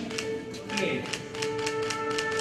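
A few people clapping, sharp claps about five a second, over music with several long held notes, with some voices.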